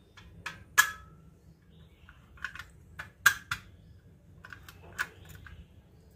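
Metal chakli press (sorya) being handled: a scattering of sharp metallic clicks and clinks as its parts knock together, the loudest about a second in and just after three seconds.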